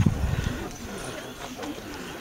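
Footsteps of people walking along a country lane and grass verge, a stroke about every half second. A low rumble fills the first half second, and faint voices sound in the background.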